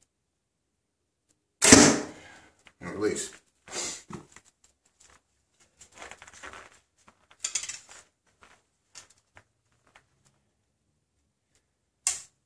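A 60-pound BowTech Experience compound bow being shot: one sharp, loud crack as the string is released and the arrow is sent into the target, a little under two seconds in, dying away within about a second.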